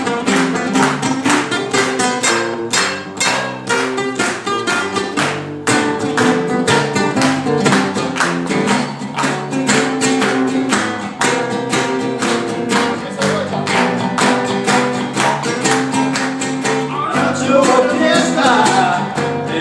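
Live band music: an acoustic guitar strummed hard in a quick, driving rhythm over an electric bass, with hand-clapping in time. A singing voice comes in near the end.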